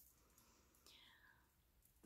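Near silence: room tone, with one faint, short falling sound about a second in.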